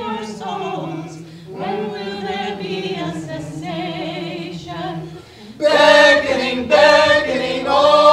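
A group of voices singing a cappella in chorus, holding long notes with a wavering vibrato. About five and a half seconds in the singing suddenly becomes louder and fuller.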